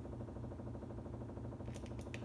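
Low steady hum, with a few faint small clicks near the end as the gimbal head's plastic tension knob and its washers are handled.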